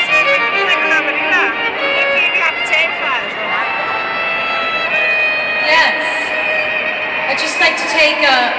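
Live band music led by a violin playing a wavering melody, recorded from within the arena crowd, with voices from the audience.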